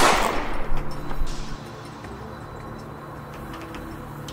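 A single loud gunshot sound effect at the very start, its echo dying away over about a second and a half.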